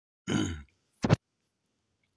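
A man's short, low, throaty vocal sound, then a brief sharp sound about a second in.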